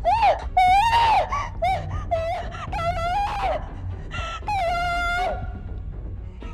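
A woman screaming and wailing in terror of the dark: a run of short, high, wavering cries, then one long held scream about four and a half seconds in.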